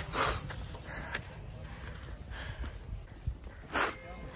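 A person breathing hard while climbing a steep trail: two loud breaths close to the microphone, one at the start and one near the end, over a steady low rumble on the microphone.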